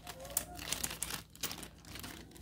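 Small clear plastic parts bag crinkling in the hands, a run of irregular crackles.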